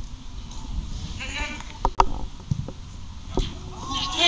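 Outdoor football match ambience over a steady low rumble: a short shout from a player about a second in, then sharp knocks of the ball being kicked around two seconds in, with a few weaker thuds after.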